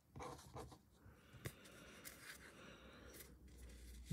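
Near silence, with faint rustles of trading cards being handled and shuffled in the hands, and one light click about a second and a half in.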